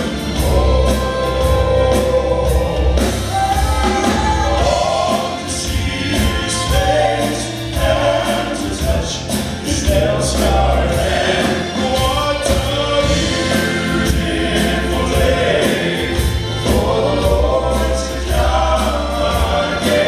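Southern gospel male quartet singing in four-part harmony through a PA, with a strong bass line underneath.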